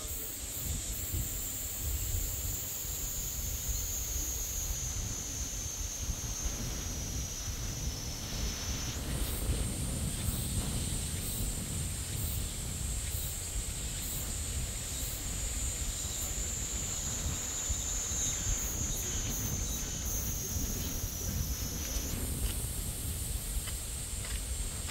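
Wind buffeting the microphone with a low rumble, over a high, steady insect buzz that slowly sinks in pitch and jumps back up about nine seconds in and again near the end.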